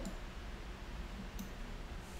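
A single computer mouse click about one and a half seconds in, over a low steady background hum.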